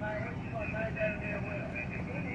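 City transit bus idling at a stop, a low steady rumble, with a voice heard over it.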